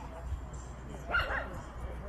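A dog gives one short bark about a second in.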